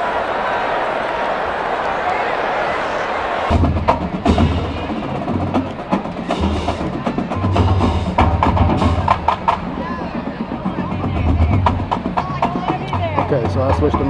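A steady stadium crowd hubbub for about the first three and a half seconds, then percussive music with a deep pulsing bass beat and sharp clicks.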